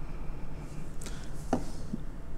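A pause with a low steady hum and three small clicks in the second half.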